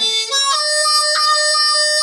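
Blues harmonica played into cupped hands: a short lower note, then a long held higher note with a brief break just over a second in.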